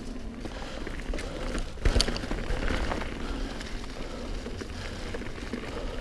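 Mountain bike tyres rolling over dry fallen leaves on a dirt trail, a continuous crackling rustle with a low rumble beneath, and a sharp knock about two seconds in as the bike clatters over a bump.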